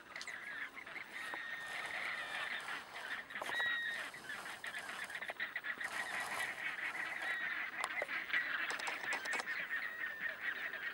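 A flock of flamingos honking continuously, many calls overlapping into a steady chatter.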